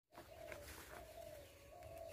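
A bird calling faintly: three short, low notes about three-quarters of a second apart, over a low rumble.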